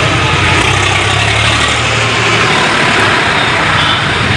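A motor vehicle engine running steadily close by, a low hum under the general noise of a busy crowd.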